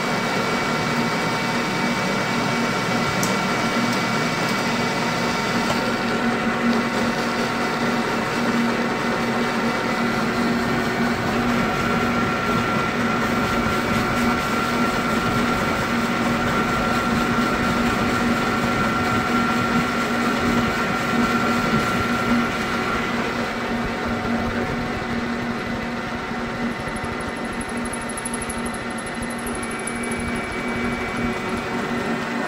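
Metal lathe running under power with an insert tool taking a heavy 100-thousandths cut on a metal bar that throws off blue chips. A steady machine hum with a high whine, which fades about three-quarters of the way through.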